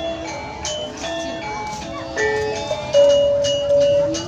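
Balinese gamelan music: bronze kettle gongs and metallophones struck in a quick ringing melody, with one louder held note about three seconds in.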